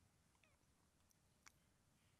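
Near silence: room tone, with a faint click about one and a half seconds in.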